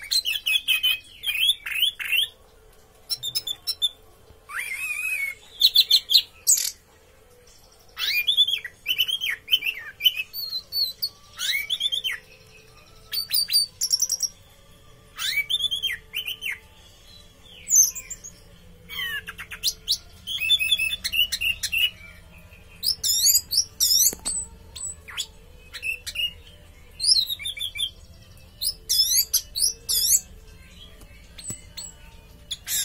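Orange-headed thrush (anis merah) singing in short phrases, one every second or two with brief pauses between. Each phrase is a run of quick falling notes mixed with high, sharp squeaky notes.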